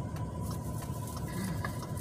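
Low steady rumble inside a car cabin, with a thin steady high tone and a few faint scattered clicks.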